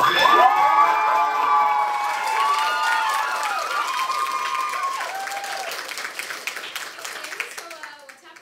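Live theatre audience cheering and applauding at the end of a song: many overlapping whoops and calls over steady clapping in the first few seconds. The applause dies away toward the end.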